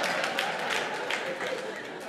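Audience laughing and applauding at a punchline, the clapping slowly dying away.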